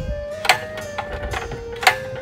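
Two sharp clicks about a second and a half apart as the switch knob of a tabletop grill is turned on, over background music holding long steady notes.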